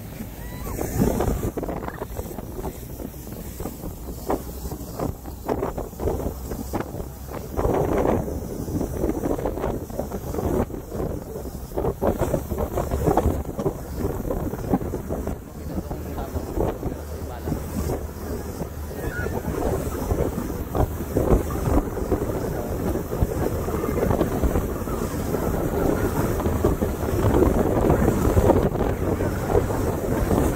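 Speedboat outboard motor running under way with wind buffeting the microphone and rushing wake water, in gusts. The sound grows louder over the last third.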